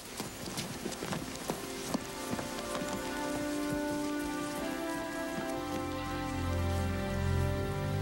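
Soft, sad background score swelling in: held tones build into chords, and a deep low part enters about three quarters of the way through. Scattered light clicks sound in the first few seconds.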